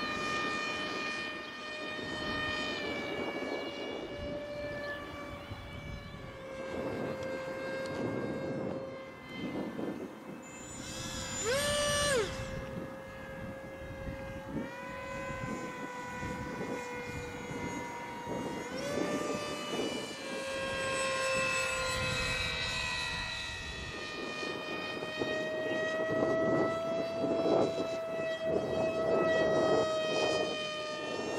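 Radio-controlled model airplanes flying overhead: the steady whine of their motors and propellers, shifting up and down in pitch, with a quick sharp rise and fall in pitch about twelve seconds in.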